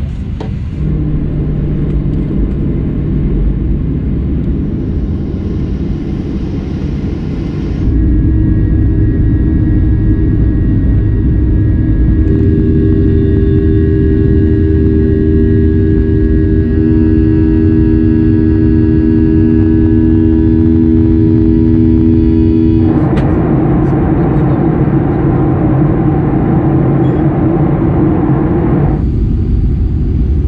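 Jet airliner cabin noise: a steady engine rumble in several cut-together clips. From about eight seconds in it grows louder, and a steady whine of several tones runs until a cut near twenty-three seconds.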